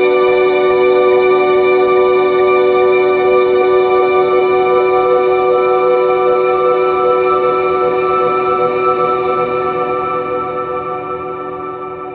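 Calm background music: a steady, echoing held chord that slowly fades out over the last few seconds.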